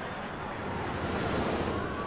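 Flight of the Hippogriff roller coaster train rushing past on its track: a whoosh of rushing air and rolling wheels that swells to its loudest about a second and a half in, then eases off.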